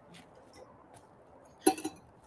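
A short clink about one and a half seconds in, a drink bottle being set down on a hard floor.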